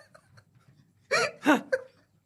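Helpless laughter: near quiet for about a second, then three short, loud, high-pitched bursts of laughing.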